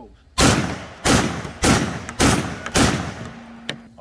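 Max Arms HDM 1050 12-gauge semi-automatic shotgun firing five rapid shots, a little over half a second apart. Each blast has a short echoing tail, and the gun cycles each round on low-brass shells rather than the recommended high brass. A light click follows near the end.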